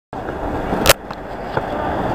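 Stunt scooter wheels rolling on concrete, with one loud sharp clack a little under a second in and a couple of lighter knocks after it.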